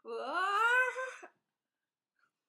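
A woman's wordless vocal sound, one long call that rises in pitch and ends after about a second and a quarter.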